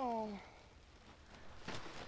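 A woman's voice in a short drawn-out exclamation that glides down in pitch, then quiet, with a single faint soft thud near the end as a piece of litter is dropped onto the rocks.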